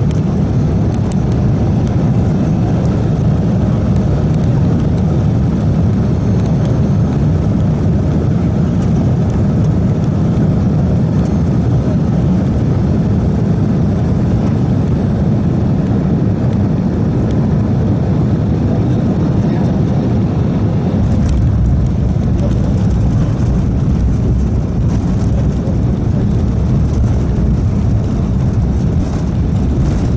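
Cabin noise of an Embraer 175 on final approach: a steady roar of its GE CF34 turbofan engines and the air rushing past. About two-thirds of the way through the jet touches down on the snowy runway, and a deeper rumble of the wheels rolling, with scattered knocks and rattles, comes in.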